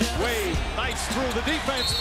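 NBA game broadcast audio: arena crowd noise with a basketball being dribbled and excited voices rising and falling, as the music track drops out near the start.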